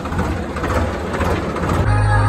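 Tractor engine running steadily, heard from on board while moving, with wind and road noise over it. Near the end it cuts suddenly to background music.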